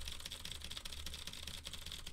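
Mechanical keyboard with Cherry MX Blue switches being typed on: a quick, continuous run of faint clicks, picked up by a handheld dynamic microphone aimed at the voice.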